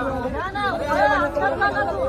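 Chatter: several people's voices calling out over one another.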